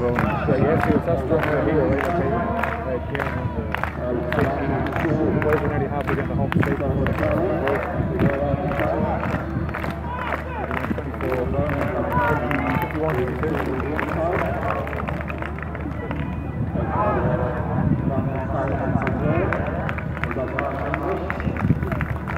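Stadium crowd: nearby spectators chatting, with a run of quick, evenly spaced handclaps that fades out about two-thirds of the way through.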